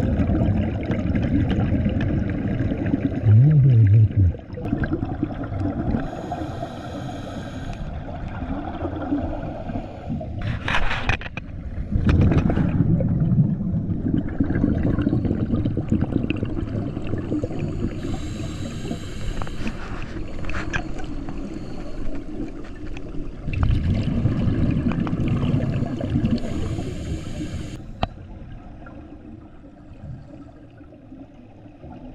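Scuba regulator breathing heard underwater: surges of bubbling exhaled air alternating with the hiss of inhalations, over several slow breaths.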